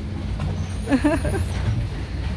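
Steady low engine rumble of motorboats on the water, with a brief snatch of a voice about a second in.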